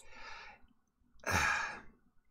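A person breathing out audibly, one short sigh-like exhale a little past the middle, after a faint breathy trail at the start.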